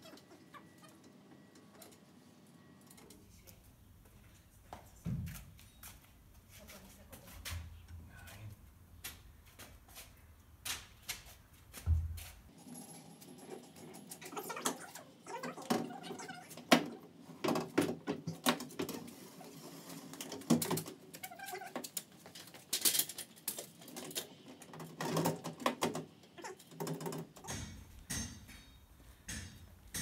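Scattered knocks, clicks and scrapes of an aluminium roof box being lifted onto and settled on a roof rack, busier in the second half.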